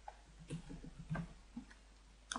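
Faint keystrokes on a computer keyboard: a handful of separate light taps as a word is typed.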